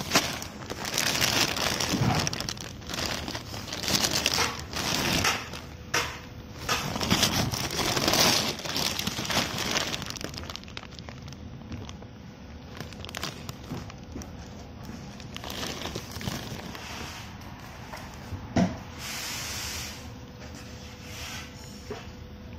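Clear plastic bags crinkling and rustling as they are handled, in irregular bursts that are busiest in the first half, with one sharp tap later on.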